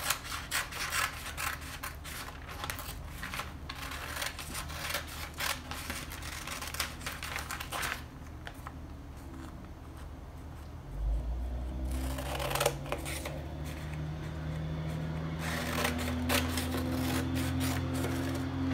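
Scissors cutting through paper pattern sheet: a run of quick snips with paper crackling, a pause, then more short bursts of cutting. A steady low hum comes in about two-thirds of the way through.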